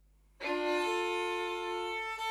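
Violin bowed in long, sustained notes, starting about half a second in after a near-silent pause.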